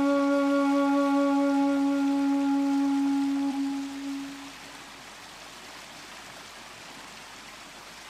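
Shakuhachi bamboo flute holding one long low note that fades out about four seconds in, leaving a soft steady hiss.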